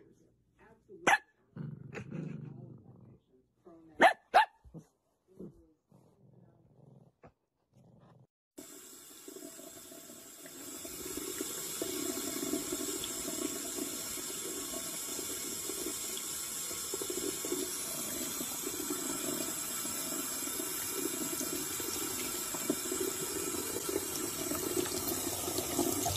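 A few short, sharp sounds in the first seconds, the loudest about one and four seconds in. Then a kitchen faucet runs steadily, its stream of water splashing into the sink from about eight seconds in to the end.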